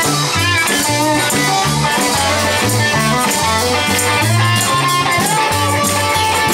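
Live rock band playing an instrumental passage: electric guitar over a moving bass line and drums, loud and steady throughout.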